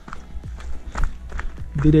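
Hiker's boots stepping quickly down a steep, loose rocky trail: a run of short crunching steps on stone and gravel, about four a second.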